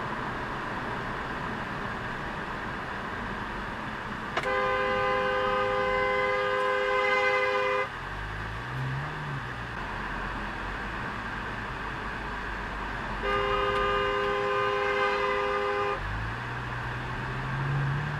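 Car horn held in two long blasts, the first about three and a half seconds, the second about two and a half, each sounding two notes at once, over steady road and engine noise heard from inside a car. After each blast the engine note rises as the car picks up speed.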